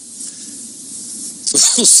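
A steady background hiss of an old broadcast recording, with a faint low hum, during a pause in a man's speech. About one and a half seconds in, he starts talking again with a loud hissing onset.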